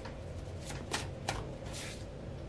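Tarot cards being handled: about four short, quick card flicks and snaps.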